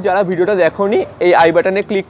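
A man speaking in Bengali. Speech only, with a faint high hiss behind it in the first second.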